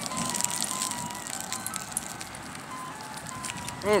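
Ice cream truck jingle: a simple tune of single, clean electronic notes played one after another, faint under the outdoor background.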